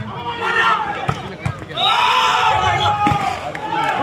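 Crowd of spectators shouting and cheering during a volleyball rally, loudest and longest about halfway through. A few sharp thuds of the ball being struck come through under the voices.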